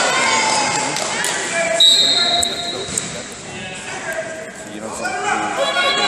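Raised voices of coaches and spectators echoing in a large sports hall during a freestyle wrestling bout. About two seconds in there is a thump, with a short, steady, high whistle-like tone at the same moment.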